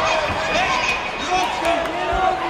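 Several voices shouting over one another in a sports hall, with scattered dull thuds of gloves and kicks landing during a kickboxing bout.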